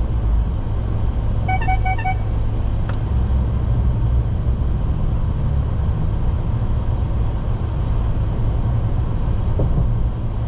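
Steady low road rumble of a car driving at highway speed, heard from inside the cabin. About a second and a half in, a quick run of four short high beeps sounds, followed by a single click.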